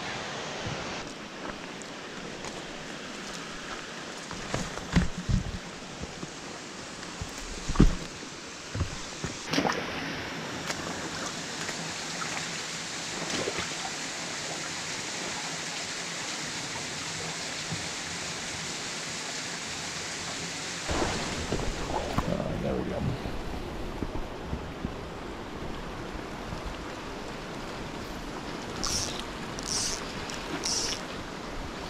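Steady rush of river water, with a few sharp knocks in the first ten seconds from footsteps and gear on rock. About 21 seconds in the background shifts to a lower, rumblier rush, and a few short high blips come near the end.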